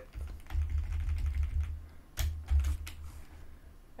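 A few separate keystrokes on a computer keyboard, the loudest a little over two seconds in, over a low steady hum.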